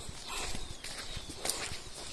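Faint footsteps of a person walking, a few irregular steps.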